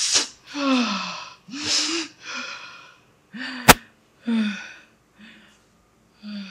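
A woman's repeated breathy gasps and sighs, about one a second, several with her voice sliding down in pitch, fading toward the end. A single sharp click cuts in a little past halfway.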